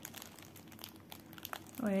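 Clear plastic packaging crinkling softly in the hands, in scattered small crackles, as a sealed cross-stitch canvas in its plastic sleeve is handled.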